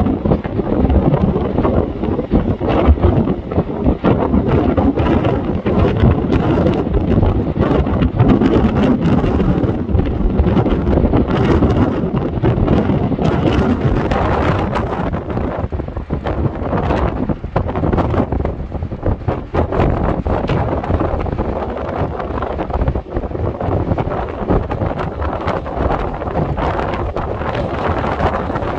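Strong storm wind gusting and buffeting the microphone, a heavy rumbling noise that swells and dips. It is gustiest in the first half and eases a little and evens out over the last dozen seconds.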